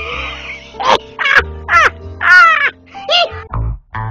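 A crow cawing about five times in quick succession over a steady low music bed, with louder bass notes coming in near the end.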